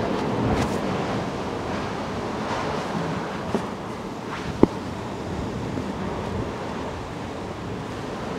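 Steady wash of the sea against the rocks with wind on the microphone. A single sharp knock about four and a half seconds in, with a fainter one a second before it.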